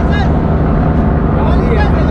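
A ferry's engine running steadily, a low drone that carries on under people's voices.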